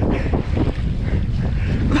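Wind buffeting a body-worn camera's microphone: a steady low rumble with a thin hiss above it.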